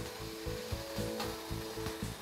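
Soft background music with a few held notes that change in steps, over a low, uneven rubbing rumble from the moving microgravity simulator chair.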